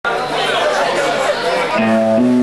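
Crowd chatter in a hall, then near the end electric guitar and bass guitar start a held note, the opening of the band's song.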